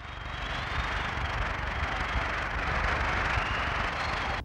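Audience applauding, a steady patter of many hands clapping that starts suddenly.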